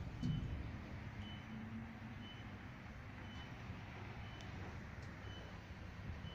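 A short, high electronic beep repeating about once a second, faint, over a low rumble of street traffic.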